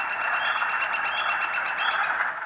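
Northern flicker giving its long, rapid 'wick-wick-wick' series, about eight notes a second at a steady pace and pitch. In early spring this call marks flickers beginning courtship and nesting.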